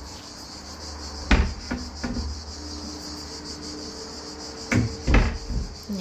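Kitchen cabinet doors being opened and shut: a few short knocks and thuds, the loudest about a second in and two more near the end.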